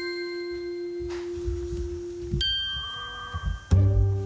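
Edited-in music cue of bell-like chime notes ringing and slowly fading, with a new higher chime struck about two and a half seconds in. A deep bass note comes in loudly near the end.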